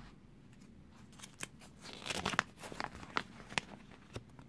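A folded paper leaflet being taken out of a clear plastic capsule-toy shell and opened: plastic clicks mixed with paper rustling and crinkling, starting about a second in.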